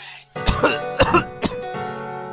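A person coughing and clearing his throat in three quick bursts, about half a second, one second and one and a half seconds in, over background piano music.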